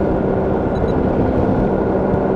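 A motorized hang glider's (trike's) engine and propeller drone steadily in level flight.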